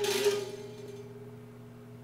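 A chord strummed on a child's plastic toy guitar, left ringing and slowly fading. The strings are still untuned, so the chord sounds off.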